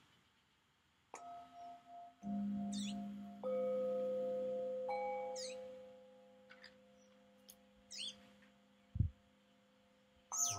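Metal singing bowls struck one after another with a mallet, four strikes in the first five seconds, their different pitches ringing together and slowly fading away. Birds chirp briefly in between, and there is a single low thump near the end.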